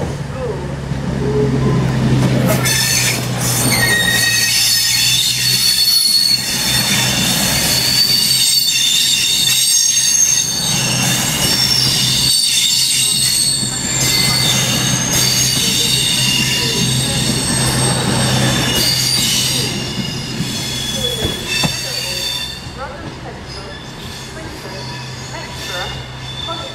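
CrossCountry Class 221 Voyager diesel multiple unit pulling out and passing close by, its underfloor diesel engines running with a steady low hum while its wheels squeal in high, wavering tones. The sound builds over the first couple of seconds and fades over the last several as the train draws away.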